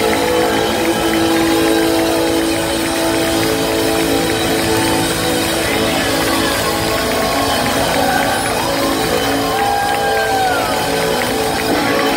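Live band and singers holding a long final chord at the close of a song, with voices gliding in runs over it in the second half and an audience cheering.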